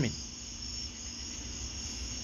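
Insects chirring steadily in the background, high-pitched, with a low hum beneath.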